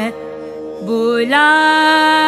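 Female vocalist singing a Hindustani thumri: an ornamented note breaks off, a soft steady accompaniment tone carries on for about a second, then she comes back in about a second and a half in with a long, steady held note.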